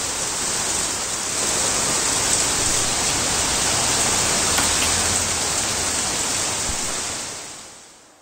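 Heavy monsoon rain falling steadily, a dense even hiss that fades out near the end.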